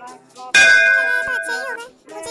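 A loud metallic ding-clang sound effect struck once about half a second in, ringing on for just over a second before it fades.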